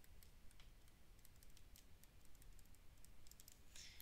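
Near silence with faint, irregular ticks of a stylus tip tapping on a tablet screen while handwriting a word.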